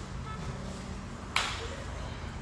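A single sharp hand slap about a second and a half in, two jiu-jitsu partners slapping hands to start a roll, over a steady low hum.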